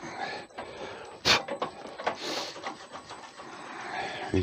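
Quiet handling sounds at a lathe as antler chips are cleared from a drill bit by hand: a single sharp knock about a second in and a brief soft hiss a second later.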